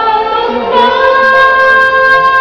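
A woman singing into a stage microphone over music, sliding up into a long held note just under a second in.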